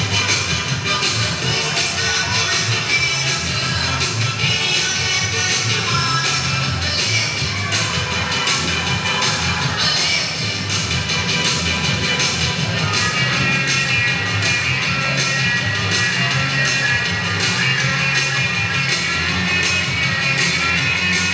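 Upbeat recorded music with a steady beat and a strong bass line, played continuously.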